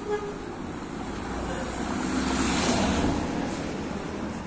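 A motor vehicle passing close by on a brick-paved street, its engine and tyre noise swelling to a peak a little past halfway, then fading.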